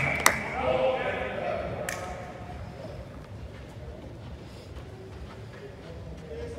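A sharp knock just after the start and a second one about two seconds in, a ball being struck or hitting the court's wall or netting, with a few faint voices in a large echoing hall that then settle to a low murmur.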